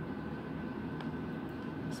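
Steady low background rumble with a faint steady high-pitched tone over it.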